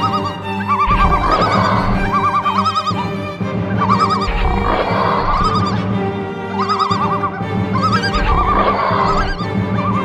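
Trailer-style background music: a sustained low drone under short, repeated wavering high tones.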